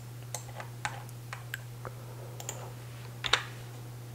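Computer keyboard and mouse being clicked while a new size value is entered: a scattered run of light, irregular clicks, with one louder click about three seconds in, over a faint steady hum.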